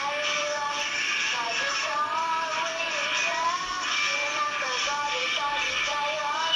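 Music with a voice singing a slow, held melody over steady instrumental accompaniment, like a devotional worship song.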